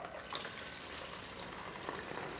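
Faint trickle of liquid kola nut fluid extract poured from a small glass bottle through a plastic funnel into a bottle, with a couple of light ticks.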